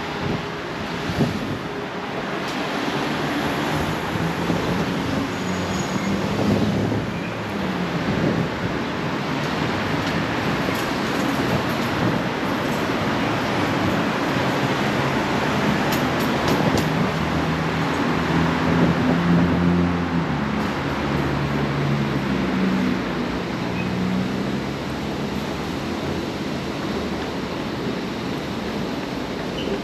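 Steady rumble of passing vehicles, with low engine drones rising and falling in pitch, loudest about two-thirds of the way through.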